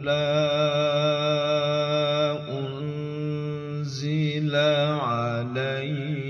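A man's voice reciting the Quran in a melodic tilawah style, drawing out a syllable in long ornamented notes. One note is held for about two seconds, followed by a brief break. Further held notes follow, with quick wavering turns near the end.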